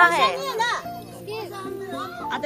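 Lively high-pitched voices, children's among them, calling and chattering over soft background music.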